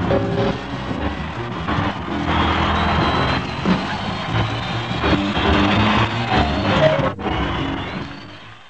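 Live band music playing, with crowd noise from the audience behind it. It cuts out for a moment about seven seconds in, then starts to fade.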